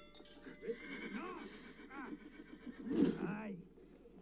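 A horse neighing in several wavering calls, the pitch rising and falling, with the loudest call about three seconds in.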